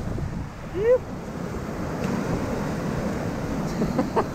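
Surf washing over rocks and wind buffeting the microphone in a steady, rushing noise. A short laugh comes about a second in.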